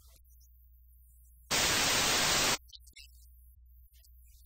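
Television static sound effect: a loud burst of hissing white noise lasting about a second, starting about one and a half seconds in and cutting off suddenly. A faint low hum sits underneath before and after it.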